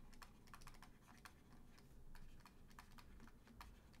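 Faint, irregular clicks and taps of a stylus on a pen tablet as words are handwritten, several a second.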